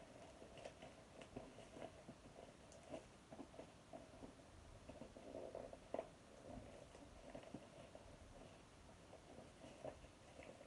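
Faint crinkling and rustling of clear plastic packaging being handled and unwrapped, with small scattered clicks. The rustle is a little louder around five to six seconds in.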